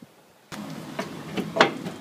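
A few knocks and clanks over a steady rushing noise that comes in suddenly about half a second in. The loudest knock falls just past the middle.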